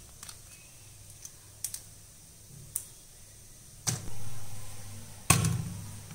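Light clicks of crab shell and a thin metal pick being handled over a stainless steel sink, then two louder knocks of crab pieces against a steel bowl, about four seconds in and near the end, each followed by a low rumbling for about a second.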